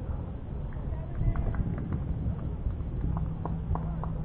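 Tennis ball being struck and bouncing during a rally: a few short sharp knocks about a second in and several more near the end, over a steady low rumble.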